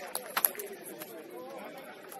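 Indistinct voices of players chatting and calling across the pitch, with two sharp clicks near the start.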